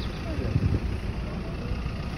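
Low, uneven outdoor background rumble with no clear single source, in a short pause between speech.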